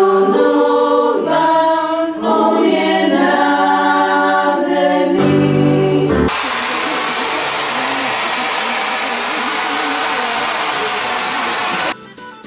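A small choir of young women singing a cappella in harmony; the song ends about five seconds in and is followed by some six seconds of steady applause.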